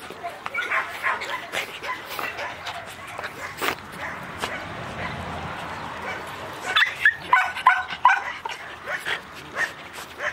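Puppies whining and yipping as they crowd around and mouth a person's hand, with a louder run of short yips about seven seconds in.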